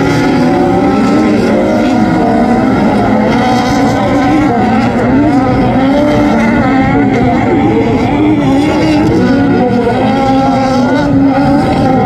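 Several Volkswagen Beetle-based autocross cars racing on a dirt track, their air-cooled flat-four engines revving up and down continuously, several at once.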